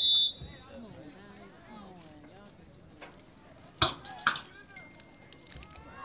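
A referee's whistle gives a short, loud, shrill blast, then distant voices chatter. About four seconds in come two sharp cracks half a second apart.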